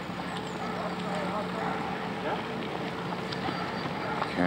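Steady rolling noise of a bicycle ride along a park path, with wind on the microphone and faint voices of people nearby.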